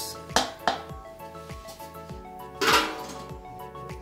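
Soft background music, over bread crumbs being poured from a metal bowl into a plastic bowl. There are two light knocks in the first second and a short rush of sliding crumbs about three seconds in.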